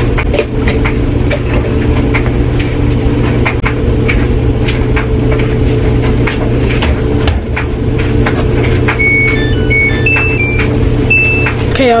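Washing machine running with a steady, loud low hum and scattered clicks. Near the end its control panel gives a short run of electronic beeps at several different pitches.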